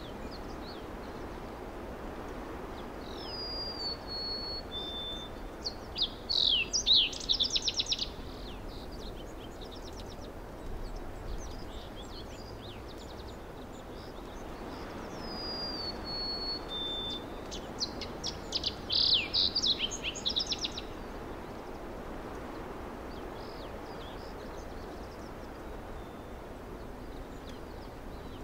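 A songbird sings the same phrase twice, about twelve seconds apart: a few short whistled notes, then a rapid burst of quick falling notes. Beneath it runs a steady outdoor background hiss.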